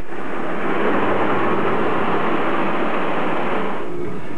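A car running close by, heard as a steady, even rush of noise.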